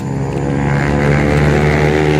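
A motorcycle engine running at a steady pitch.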